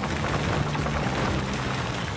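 Background music over a Caterpillar D9L bulldozer's diesel engine running under load, with the grainy crackle of dirt, roots and stumps being pushed by its blade. The sound holds at an even level.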